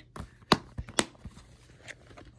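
Plastic DVD case being handled, giving a few sharp clicks and taps; the two loudest come about half a second and a second in.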